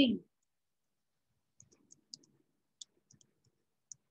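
Computer keyboard keys clicking as a word is typed: about ten light, quick taps, starting about a second and a half in.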